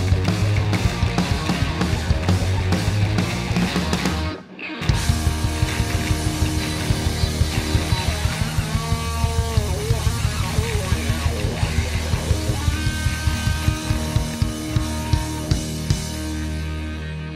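Live rock band playing electric guitars, bass and drum kit. The music drops out for about half a second around four seconds in, then comes back with a steady drum beat. Around the middle, guitar notes slide up and down in pitch.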